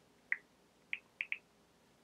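Key-press ticks of a smartphone's on-screen keyboard as letters are typed: a single short, high tick, then three more in quick succession about a second in.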